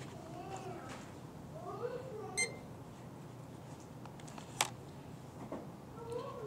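Faint voices talking in the background, with a single short, high electronic beep a little before halfway and a sharp click later on.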